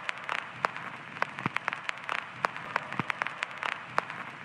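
Old-film-style surface crackle: irregular sharp pops and clicks, several a second, over a steady hiss.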